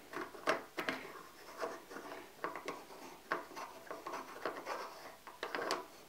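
A Celestron f/6.3 focal reducer being turned by hand onto the threaded rear cell of a Schmidt-Cassegrain telescope: faint, irregular scratching and small ticks as the threads engage and the fingers rub the knurled barrel.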